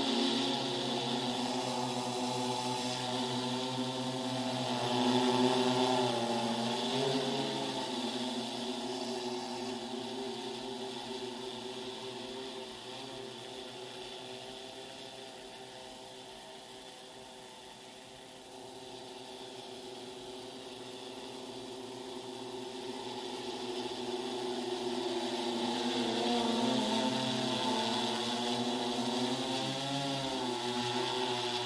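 Multi-rotor agricultural spray drone flying, its rotors humming with pitch that shifts as it manoeuvres. The hum is loudest about five seconds in and again near the end, and fades in the middle as the drone moves off.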